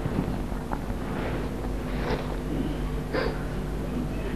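Steady low hum from a microphone and sound-system recording, with a few faint, short, soft sounds about two and three seconds in.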